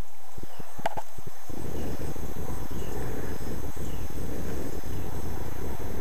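Hawk moths' wings whirring as they hover: a low, rough whir that sets in about a second and a half in and then holds steady, with a few sharp clicks just before it.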